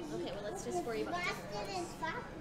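Young children's high-pitched voices chattering and exclaiming, over a steady low hum.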